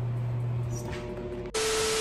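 A TV-static transition sound effect: a loud burst of hissing white noise with a steady tone running through it, starting about three quarters of the way in and cutting off suddenly. Before it, a steady low hum.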